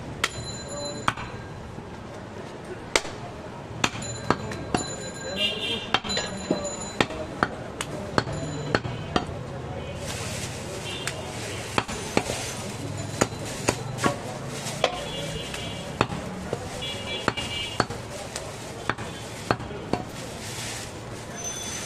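Knife blade chopping goat meat against a wooden log chopping block: sharp knocks at irregular intervals, a few each second at times, over background voices.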